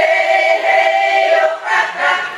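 A choir of older women singing a Ukrainian folk song together, holding a long note and moving to a new phrase about one and a half seconds in.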